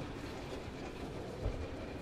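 A 1920 Cushman cart rolling away across a concrete floor: a quiet, steady low rumble of its wheels and drive, with one thump about a second and a half in.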